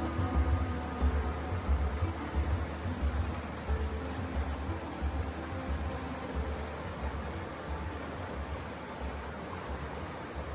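Rushing brook over rocks: a steady noise of fast water, with a low, uneven rumble underneath.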